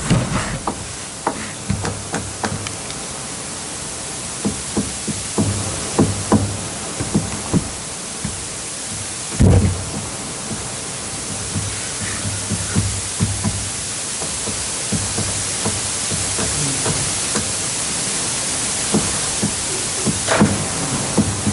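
Steady background hiss of room noise, with scattered light clicks and knocks and one louder thump about halfway through.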